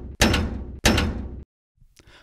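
Heavy impact sound effects accompanying title words slammed onto the screen. Each hit strikes suddenly and dies away over about half a second: one comes just after the start and another just under a second in.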